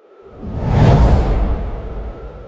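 Whoosh transition sound effect with a deep rumble under it, swelling to a peak about a second in and then fading away.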